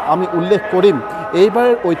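A man speaking in Assamese, narrating continuously, with some vowels drawn out; no other sound stands out.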